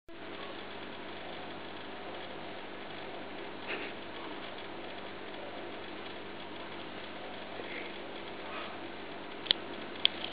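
Steady mechanical hum of running aquarium equipment, with one sharp click near the end.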